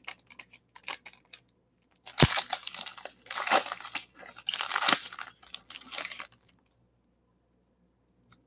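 Foil wrapper of a basketball trading card pack being torn open and crinkled by hand: crackly tearing with sharp snaps, the loudest about two seconds in, stopping about six seconds in.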